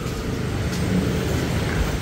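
Steady street background noise of passing traffic and scooters on a busy shopping lane, with no sharp events.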